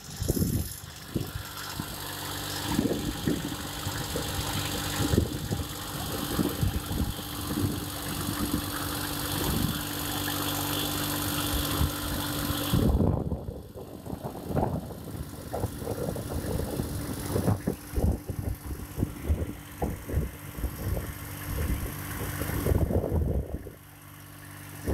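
VST Mitsubishi Shakti 22 hp tractor's diesel engine running steadily while pulling a seed drill, with irregular low thumps and rustle over it. The hiss over the engine drops away about halfway through.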